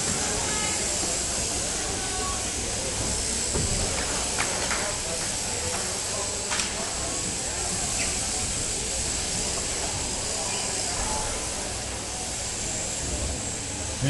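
Electric sheep-shearing handpieces running steadily, a continuous hiss with a few faint clicks and knocks over it.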